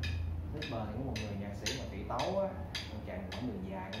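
A metronome ticking steadily, about two clicks a second, keeping time for guitar practice.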